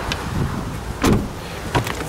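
Jeep Wrangler's rear door shut, a single thump about a second in, followed by a lighter latch click near the end as the front door's outside handle is pulled.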